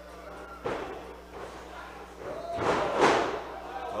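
Wrestlers' bodies hitting a pro wrestling ring's canvas: a thud about half a second in, then a heavier slam near the three-second mark.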